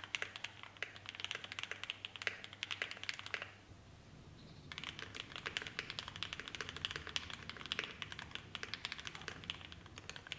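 Fast typing on a mechanical keyboard with lubed JWICK Black linear switches fitted with Project Vulcan Poron-and-PET switch films, a quick steady run of key clacks. It pauses about three and a half seconds in for roughly a second, then resumes; the second run is typed on the board with the thicker 0.30 mm films.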